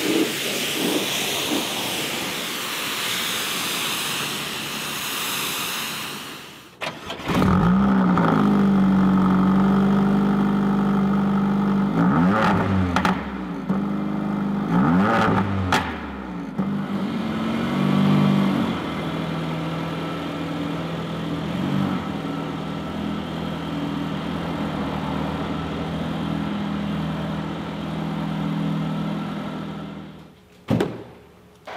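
A pressure washer's spray hisses steadily against the car for the first six seconds or so and then stops. The Mercedes CLA45 AMG's turbocharged 2.0-litre four-cylinder then starts with a flare of revs, is revved up and down twice, and settles to a steady idle.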